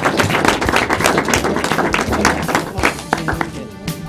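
Audience applauding with many hands, the clapping thinning out near the end as keyboard music comes in.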